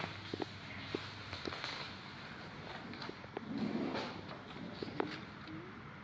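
Handling noise with a few light, scattered clicks and taps as a small plastic windscreen-washer jet is handled and fitted to the car's bonnet.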